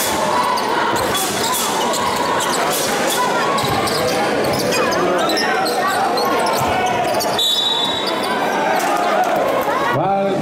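Live court sound of a basketball game: a basketball bouncing on the hardwood court, with repeated knocks, amid the voices and shouts of players and spectators.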